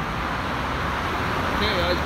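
Passing car traffic on a multi-lane city street: a steady wash of tyre and engine noise from a batch of cars, growing slightly louder near the end as more cars come by.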